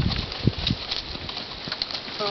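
Miniature horse trotting in harness, pulling a two-wheeled cart: a few separate hoofbeat knocks over steady background noise.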